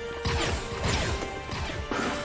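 Battle sound effects from an animated Star Wars episode: a rapid run of blaster shots, each falling in pitch, mixed with crashing impacts.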